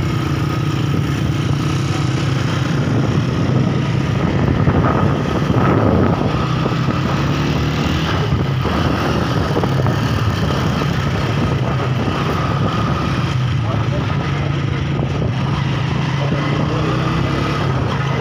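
Vehicle engines running steadily close by, a low continuous hum, with people's voices mixed in.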